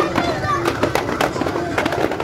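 Procession sound: voices singing or chanting over music, with many sharp, irregular percussive hits throughout.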